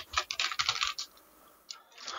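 Typing on a computer keyboard: a quick run of keystrokes through the first second, a pause, then a couple more keystrokes near the end.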